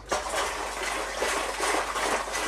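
Hot sterilising solution moving in a plastic homebrew barrel: a steady watery rush that starts suddenly.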